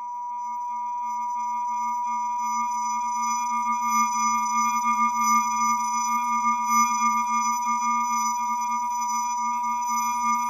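A steady electronic tone: several pure tones sounding together, held without change, swelling up over the first two seconds and then staying even.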